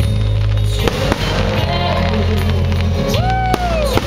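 Aerial fireworks bursting, with a few sharp bangs about a second in and again near the end, over loud continuous music with a steady bass line.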